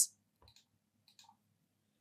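A few faint computer mouse clicks, about half a second in and again just past a second, over near silence.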